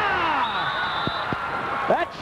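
Indoor soccer arena crowd noise as a goal is scored, with a man's voice crying out in one long falling shout and a brief high, steady whistle-like tone about half a second in.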